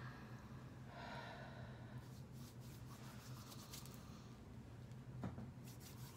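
Faint breathing: a slow, deep inhalation through the nose into cupped hands, about a second in, smelling essential oil rubbed on the palms. A few faint clicks follow, over a low steady hum.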